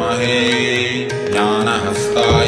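Devotional music: a Sanskrit mantra chanted over a steady held drone, with light percussion strikes.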